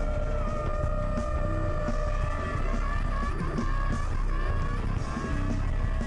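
Live improvised rock music: long held, slightly wavering notes sit over dense bass and drums with cymbal hits. The lineup is effected cello, keyboards, guitar, bass and drums.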